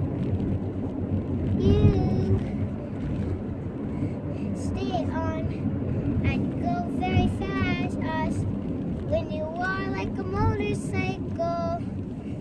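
A young child singing in a wavering voice with held, gliding notes and no clear words, over a steady low rumble.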